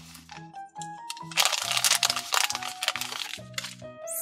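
A thin plastic blind-bag packet crinkling and tearing as it is opened by hand, in a dense spell from about a second and a half in to just past three seconds. Light background music with a simple stepping melody plays underneath.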